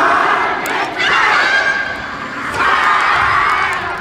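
A yosakoi dance team shouting a chant together, three long group shouts about a second apart.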